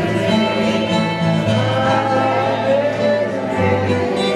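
A man singing a Dutch song live, accompanied by guitar, with held melodic notes over a changing bass line.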